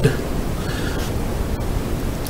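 A steady hiss of background noise in a pause between spoken sentences.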